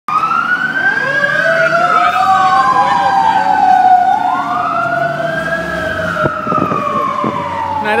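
Fire engine siren wailing in a slow rise and fall, about four seconds per cycle, with a second, lower siren tone gliding beneath it.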